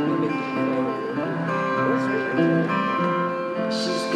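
Steel-string acoustic guitar strumming chords, the notes ringing steadily, as the instrumental accompaniment to a solo song.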